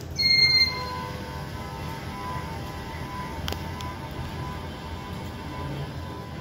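A short electronic buzzer beep from the smart fan speed controller as the speed is changed from the phone, then the steady low hum of the ceiling fan running, with one faint click a few seconds in.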